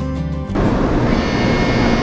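Background music that ends about half a second in, followed by the loud, steady noise of a shinkansen platform with a stopped shinkansen train, a low steady hum running through it.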